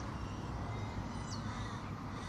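Faint steady outdoor background with a distant bird calling.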